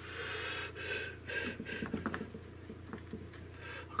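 Bristle brush scrubbing and mixing oil paint on a palette: a series of short, soft scratchy swishes, busiest in the first couple of seconds.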